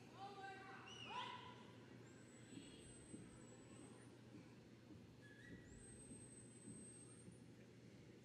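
Near silence in a large arena: faint crowd murmur and shuffling, with a few brief distant voices in the first second or so. Two faint, thin, high whistling tones follow, each about two seconds long.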